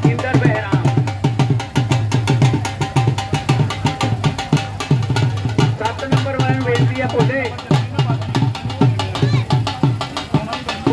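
Dhol drum played in a fast, even beat, with voices over it.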